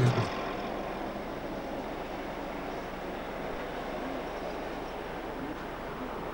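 A low drone stops just after the start, leaving a steady, even hum of distant traffic with no distinct events.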